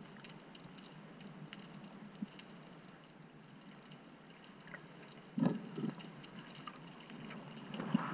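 Underwater sound through an action camera's waterproof housing: a muffled, steady water hiss with scattered faint clicks. There are two dull whooshes about five and a half seconds in and another near the end.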